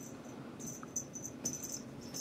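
Small bell inside a cat toy mouse on a string jingling in short, faint, high-pitched bursts as a cat swats at the dangling toy.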